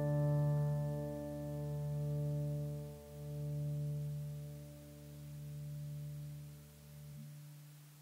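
A strummed chord on an acoustic guitar in DADGAD tuning rings out and slowly dies away, its loudness swelling and dipping as it fades. The lower notes cut off about seven seconds in.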